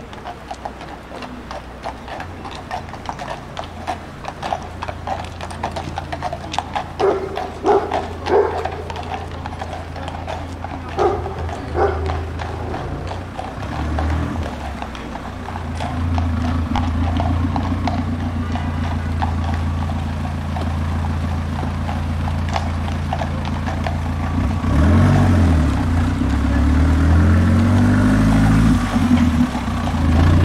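Hooves of a carriage horse clip-clopping steadily on the paved street. From about halfway a low engine hum builds, and near the end a car passes close, its engine note rising and falling.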